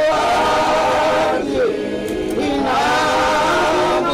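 A group of voices singing together without instruments, long held notes in phrases, with a brief pause about halfway through.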